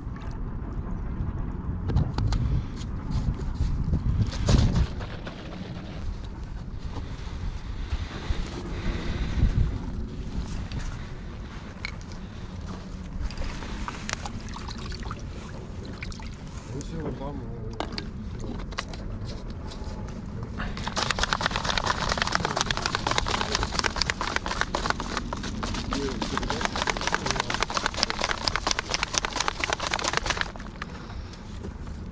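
Wind buffeting the microphone, with water lapping at the shore rocks. In the last nine seconds a fast, steady rattling and sloshing comes in: a capped bottle of acrylic marker ink being shaken to mix in water.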